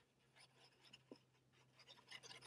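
Near silence: the faint scratching of a liquid glue bottle's tip being rubbed across cardstock, over a low steady hum.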